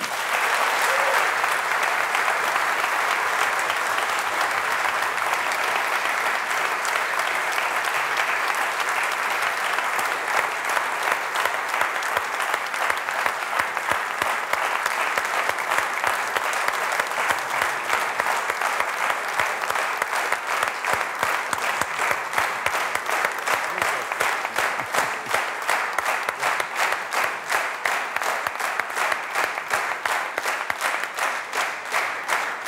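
Studio audience applauding: dense, steady clapping that sets in at once and thins into more distinct, separate claps in the second half.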